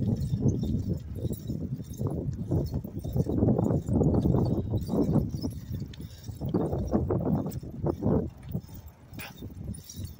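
Wind buffeting the microphone of a phone carried on a moving bicycle: a loud, rough low rumble that swells and drops and eases off near the end.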